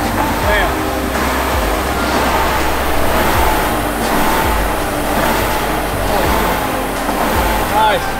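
Concept2 SkiErg's air-resistance flywheel whooshing as its handles are pulled down hard, the rush and its faint whine surging with each stroke about once a second.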